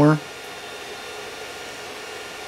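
A 3D printer running mid-print, its fans and motors giving a steady whir.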